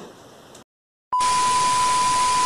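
Television static sound effect: a loud, steady hiss with a steady high beep, starting suddenly about a second in after a moment of dead silence.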